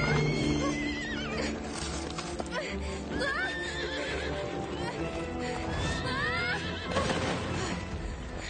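Horse whinnies used as the voice of an animated unicorn, three wavering calls: one as it rears near the start, another about three seconds in and a third about six seconds in. Hoofbeats of its gallop come in under a steady orchestral music score.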